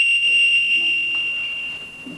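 A steady high-pitched whine from PA microphone feedback, one held tone that fades away near the end.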